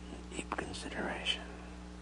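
A person's soft, low voice for about a second, with a few lip clicks and hissy consonants, over a steady electrical hum in the recording.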